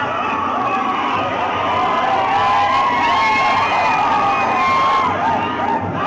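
Large crowd cheering and shouting, many voices overlapping at once, growing louder about two seconds in.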